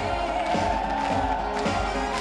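Amplified pop music from a live stage show, with a singer holding a long wavering note over the backing track.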